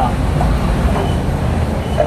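A steady low rumble of a vehicle engine.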